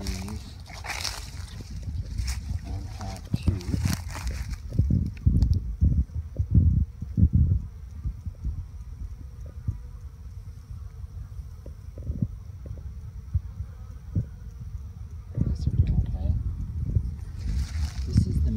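Low rumbling and bumping of a handheld phone's microphone being moved about, with crackly rustling in the first few seconds, heaviest around six to seven seconds in and again near the end.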